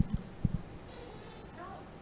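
A quiet pause in a press-conference room: low room tone with a few soft low thumps in the first half second and a faint voice briefly near the end.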